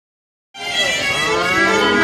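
A woman singing one long held note into a microphone over a PA, starting about half a second in, with steady instrument notes sounding under it.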